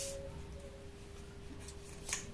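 A tarot card sliding and being set down on a wooden table: a short soft swish at the start, then quiet room tone with a faint steady hum.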